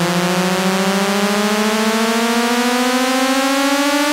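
Synthesizer tone in a 1990s hardcore rave track, slowly rising in pitch over a bed of hissing noise with no beat: a build-up riser in a breakdown.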